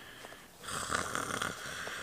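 A long, raspy breath or sigh, starting about half a second in and lasting over a second.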